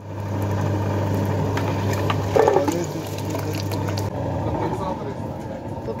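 Electric motor of a mini-industrial tomato press juicer running with a steady hum while it crushes tomatoes into juice and pulp. The hum weakens about four seconds in.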